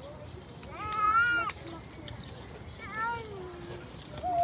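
Two short, high-pitched vocal calls: one rising and falling about a second in, the louder of the two, then a falling one around three seconds.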